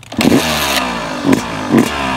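2020 Yamaha YZ250's single-cylinder two-stroke engine running on a stationary bike while its throttle is blipped. The revs jump sharply and fall back three times, about half a second to a second apart.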